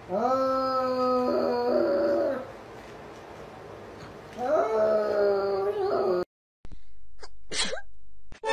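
A cat yowling: two long drawn-out calls, each sliding up at the start and then holding a steady pitch, a few seconds apart. A hunched calico cat is warning off an approaching kitten.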